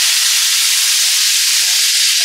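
Loud, steady sizzle of diced eggplant and pancetta frying in hot oil in a pan, stirred with a spatula.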